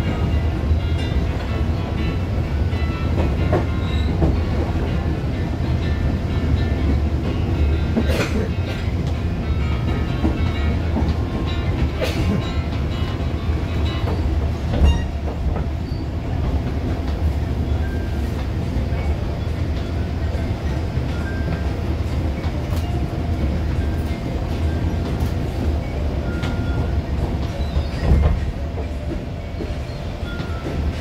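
Cabin noise inside a KRL Commuterline electric commuter train on the move: a steady low rumble of wheels on track, with a few sharp knocks from the track spread through it.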